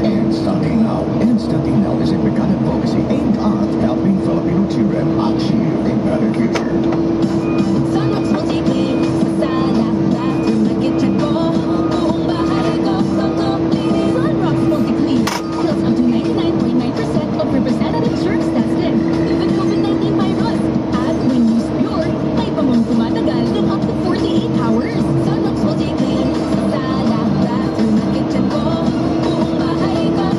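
A steady engine drone with music playing over it, the engine holding one even tone throughout.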